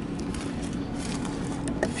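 Steady low hum, with a few faint light clicks near the end as the minivan's fuel filler door is pushed and swung open.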